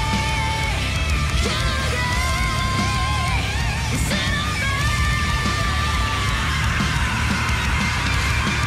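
Live heavy metal music from a Japanese all-female metal band. Long held notes waver with vibrato over dense drums and bass.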